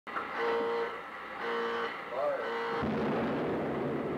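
Intro sound of a channel title card: a few held pitched tones and a short pitch swoop, then a low rumbling noise comes in and slowly fades.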